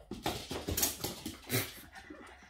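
Boston terrier growling in play, not in earnest, in a run of rough, noisy bursts while he dashes about.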